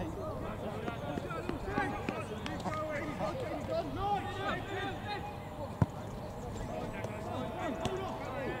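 Players' voices calling across an outdoor football pitch, overlapping and distant, with one sharp thump about six seconds in, typical of a football being kicked.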